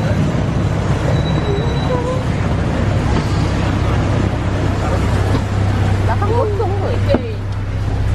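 City street traffic noise: a steady low rumble of vehicles, with faint voices of people nearby. Near the end a single thump, after which the traffic noise is quieter.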